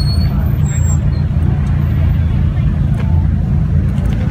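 A car engine running close by, giving a steady, deep rumble.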